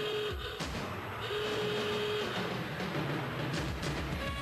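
TV title-sequence sound effects: a flat electronic alarm tone sounds twice over a dense mechanical rattling noise.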